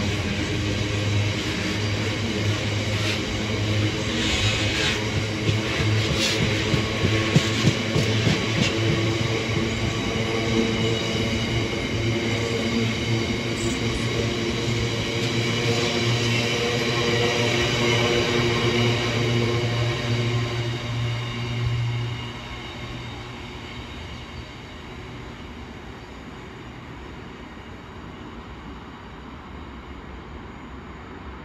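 Loaded container wagons of a long freight train rolling past at speed: a steady, loud rumble of wheels on rail, with several sharp clicks in the first ten seconds. About 22 seconds in, the sound drops off abruptly as the last wagon passes, and the train is then fainter as it goes away.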